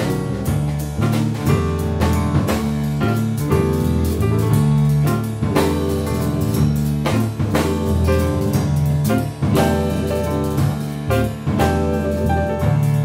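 A small jazz band playing live: grand piano, electric guitar, electric bass and drum kit, with a walking bass line under piano and guitar chords and steady cymbal and drum strokes.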